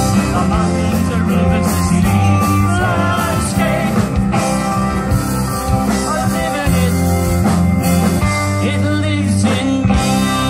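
Folk-rock band music with guitar, playing steadily.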